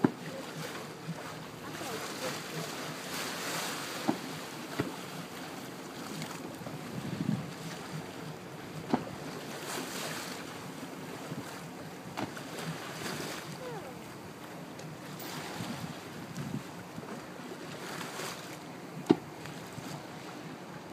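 Steady wind and sea-water noise aboard a boat, with faint voices in the background. A few brief knocks come through, the loudest near the end.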